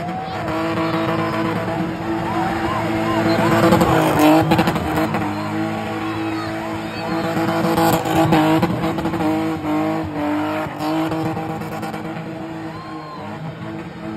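BMW E30 engine held at high, steady revs while the car spins, rear tyres screeching on the tarmac. It is loudest about four and eight seconds in, with people in the crowd shouting.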